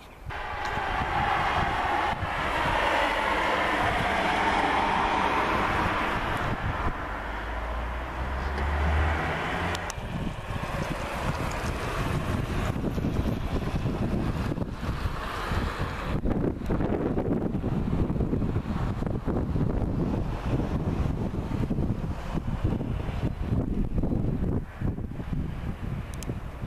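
Wind buffeting the camera microphone in uneven gusts, a low rumble through most of the stretch. For the first ten seconds a vehicle's steady road noise rises and fades as it passes, then gives way to the wind.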